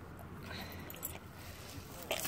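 Faint rustling and small clicks of a landing net's mesh on grass as a carp is handled in it, mostly about half a second to a second in.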